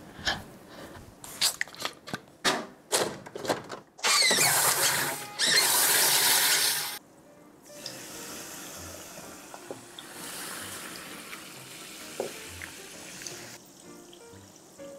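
Clear liquid poured from a bottle over ice into a tall glass, a faint steady pouring stream lasting several seconds in the second half. Before it come a few clicks and knocks, then a loud rushing noise for about three seconds.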